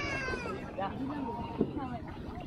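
A young child's high, drawn-out whining cry that falls slightly in pitch, followed by two shorter whimpers.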